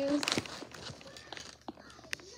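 Faint crackling and a few small clicks of a clear plastic blister tray holding toy cars being handled, with a sharper click near the end.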